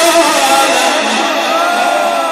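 A male reciter chanting the Quran in melodic, ornamented tajwid style into a microphone, his voice wavering and bending in pitch through a drawn-out phrase.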